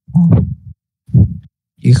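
Speech only: a man says a few short words in Vietnamese, in three brief bursts.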